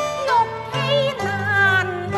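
Cantonese opera music: a high melody line with vibrato and sliding pitch over a steady low accompaniment.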